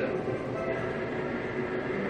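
Betting-shop slot machine spinning its reels, a steady electronic spin sound with a voice speaking in the background.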